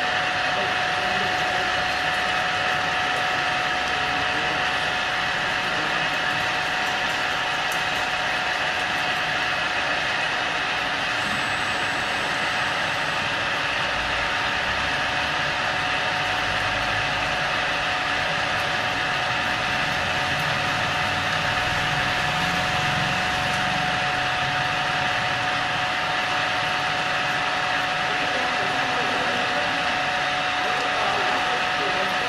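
An 8-axis CNC drilling machine running steadily in automatic mode, its spindle drilling holes around a pitch circle in a cast housing, with a steady whine over the machine noise.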